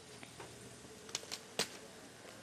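Three short, sharp clicks a little over a second in, the last the loudest, over a faint steady background.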